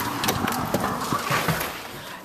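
A front door being opened and walked through: a run of knocks and clicks from the door hardware and footsteps, over a steady hiss.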